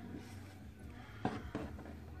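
Quiet room tone with a low steady hum and two faint clicks a moment apart, a little over a second in.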